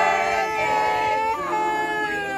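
A group of voices singing a birthday song together, holding long notes, with the pitch stepping to a new note about one and a half seconds in.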